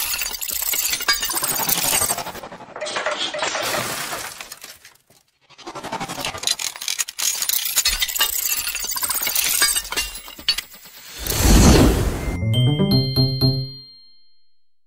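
Intro music sting with sound effects: two long stretches of dense clattering and crashing, a rushing swell near the end, then a ringing chime that fades out.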